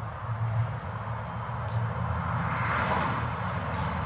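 A car passing: a steady low hum under a wide noise that swells to a peak about three seconds in, then eases.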